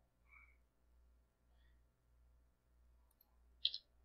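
Near silence with a faint low hum that pulses about once every two-thirds of a second, and a single sharp computer keyboard keystroke click near the end.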